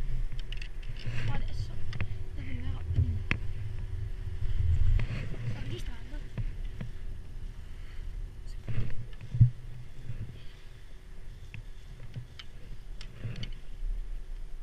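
Riding a 1993 Poma four-seat chairlift: a continuous low rumble with wind on the microphone, and a few sharp knocks along the way.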